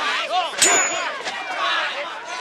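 Knife blades clanging together once, about half a second in, with a short metallic ring, over a crowd of onlookers shouting.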